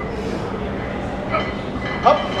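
Steady rumbling background noise of a large gym hall, with faint voices briefly audible.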